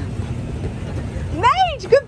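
Alaskan Malamute giving two high, rising-and-falling whining 'woo' calls near the end, over a steady low rumble.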